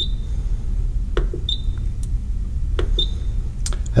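Three short, high electronic beeps from a Rain Master Eagle Plus irrigation controller as its selector dial is worked to set the time, about a second and a half apart, with faint clicks of the dial between them. A steady low hum runs underneath.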